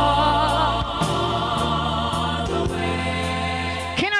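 Gospel song with a choir singing held chords over a bass line that steps to a new note every second or so. A lead voice wavers above early on. The music stops abruptly at the very end.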